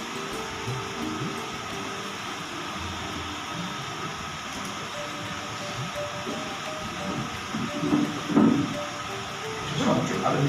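Steady hiss of room noise, with a few brief louder murmurs about eight seconds in.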